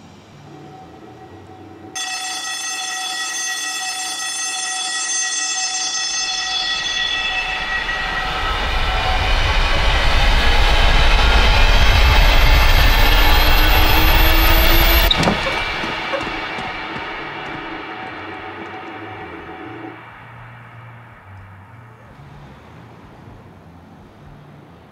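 A soundtrack drone: a sustained horn-like chord enters suddenly and swells into a loud crescendo with a deep rumble underneath. About fifteen seconds in it cuts off abruptly, leaving a tail that fades away.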